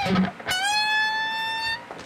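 Electric guitar: a short pluck, then a high note bent up in pitch and held for over a second. This is a string-bend test of a freshly raised bridge, and the bent note rings out rather than dying.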